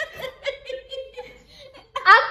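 High-pitched laughter, a run of short laughs repeating a few times a second.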